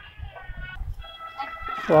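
A pause between phrases of devotional chanting: faint sustained tones and low rumble, then the chanting, a long held sung phrase, starts again right at the end.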